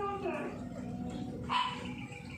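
A dog barking, with one short, sharp bark about one and a half seconds in.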